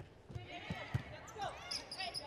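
A volleyball rally on a hardwood court: several sharp smacks of the ball being served and played, with short squeaks of sneakers on the floor.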